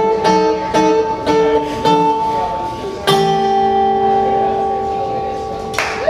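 Acoustic guitar strummed in short, evenly spaced chords, then one final chord struck about three seconds in and left ringing to close the song.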